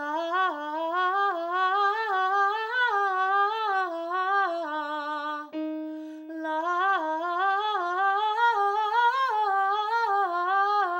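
Female voice singing a wordless vocal agility exercise: fast groups of four notes stepping up the scale and back down, in two long phrases with a short steady note between them about halfway through.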